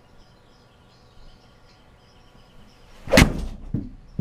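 An Adams MB Pro Black 6-iron striking a golf ball off a hitting mat into a simulator impact screen: one sharp, loud smack about three seconds in, followed by a smaller knock.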